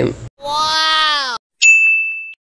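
Editing sound effects: a pitched tone lasting about a second whose pitch droops at the end, then, after a short gap, a sharp high ding that rings on and fades.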